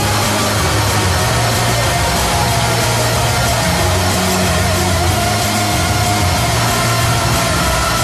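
Instrumental noise-pop with no vocals: a dense, loud wall of distorted guitar over a bass line that changes note every second or so, with a held, wavering guitar tone through the middle.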